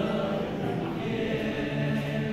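Boys' choir singing a Chinese New Year song in held chords, the lowest voices moving down to a new note near the end.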